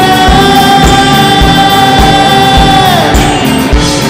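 Male lead singer of a Carnatic progressive rock band holding one long high note over the band's drums and bass; the note falls away about three seconds in. A steady drum beat runs underneath.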